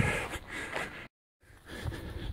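A person's breath exhaled near the microphone, then a steady rush of noise, broken by a moment of complete silence a little past halfway, after which the rushing noise returns and grows.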